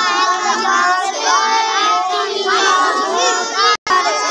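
A group of children reciting their lessons aloud all at once, many voices overlapping in a continuous chanting babble. The sound cuts out completely for a moment near the end.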